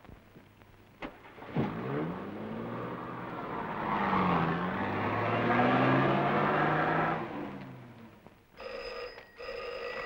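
A car door shuts, then a period ambulance car's engine starts up and revs as the car pulls away, its pitch dipping and climbing again as it drives off and fades out. Near the end a desk telephone bell rings twice.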